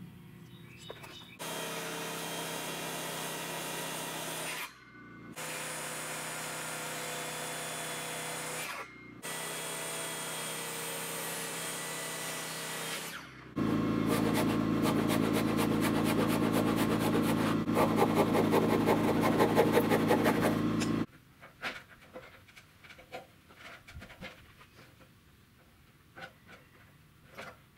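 Electric power saw cutting a wooden rafter board in several steady runs with a motor whine. It is followed by a louder run of about seven seconds with a fast, even chatter, which stops suddenly, leaving a few light knocks.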